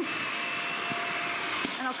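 Dyson Small Ball upright vacuum cleaner running on a shag rug: a steady motor whine with a hiss of suction.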